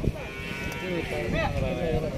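A bullock lowing in one long, wavering call, with men's voices around it.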